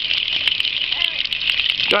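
Steady hiss of running water, with a few small clicks through it.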